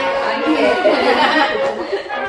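Several people chattering at once, overlapping and indistinct, over background music with sustained tones.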